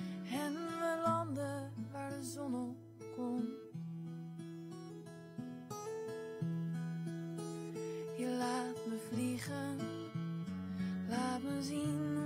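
Acoustic guitar playing a song's accompaniment solo, held chords changing every second or two, with a woman's voice singing brief wordless notes near the start and again near the end.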